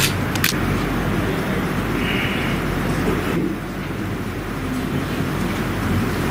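Steady, fairly loud room noise, a low rumble with hiss and no speech, with two sharp clicks in the first half second.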